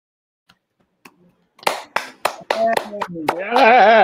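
Hand claps, about three a second, starting after a second and a half of silence, then a voice calling out in a long wavering cheer over them near the end.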